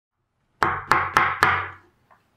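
Four sharp knocks in quick, even succession, about a quarter second apart, each with a brief ringing tail that fades out after the last.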